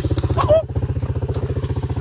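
ATV engine running steadily, with an even, rapid beat of firing pulses.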